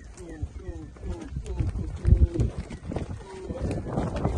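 A man calling to cattle in quick, short, falling calls, about three a second, while the cattle's hooves thud and scuff on the dirt of the corral.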